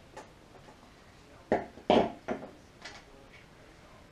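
Wires and crimp connectors being worked by hand: a faint click at the start, then a few short, sharp clicks and crunches in quick succession, the loudest about two seconds in.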